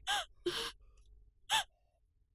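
A woman gasping and sobbing, three short catching breaths, the first and last with a brief high cry in them.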